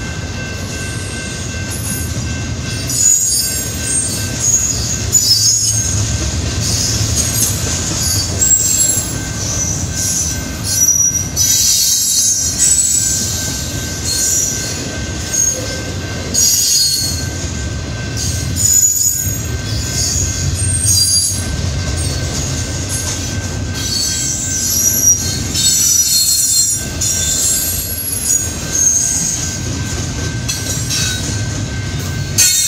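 Double-stack intermodal freight train rolling past on steel wheels: a steady low rumble with high-pitched wheel squeals coming and going throughout.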